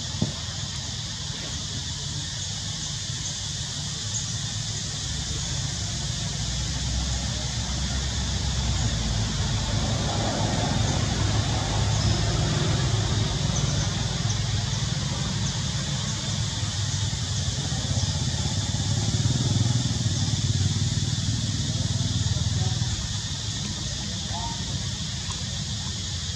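Low hum of a motor vehicle engine, growing louder over several seconds, holding, and dying away near the end, over a steady high-pitched hiss of outdoor ambience. A single click comes just after the start.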